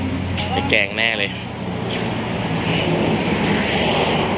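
Steady rush and low hum of road traffic, with a short spoken phrase about half a second in.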